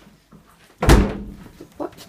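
A small under-counter fridge door pushed shut, closing with a single thump a little under a second in.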